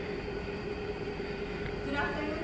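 Steady low room hum with a faint constant tone underneath, like a ventilation or air-conditioning unit running.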